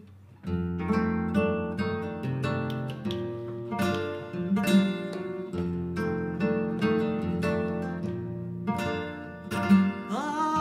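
Flamenco guitar played solo, with picked notes and sharp strummed chords. It starts about half a second in.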